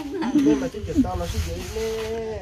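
Speech: people talking, with one drawn-out syllable held at a steady pitch near the end.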